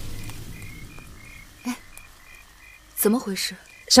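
Night ambience of short, high chirps repeating about twice a second in two alternating pitches, as background music fades out in the first second; a man's voice comes in near the end.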